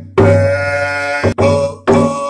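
A man singing held vocables in a wolf song while beating a hand-held frame drum with a beater. The drum strokes come near the start, a little past halfway and near the end, each breaking the sung tone.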